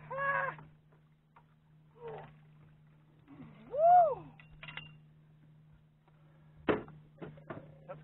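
Untranscribed exclamations from fishermen netting a big catfish: a short shout at the start and a loud, drawn-out cry that rises and falls in pitch about four seconds in. A steady low hum runs underneath, and a few sharp knocks come near the end.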